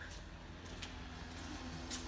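Low steady hum of powered shop equipment, with a few faint clicks.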